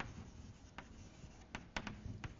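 Chalk writing on a blackboard: a faint scratching of the chalk with a few sharp taps as it strikes the board, most of them close together in the second half.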